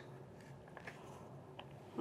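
Faint light ticks of cut radish pieces being gathered by hand on a cutting board, over quiet room tone.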